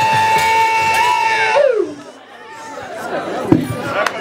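A woman's voice holds one long, high, steady note that slides down and fades about a second and a half in. Fainter crowd voices follow, with a single sharp knock near the end.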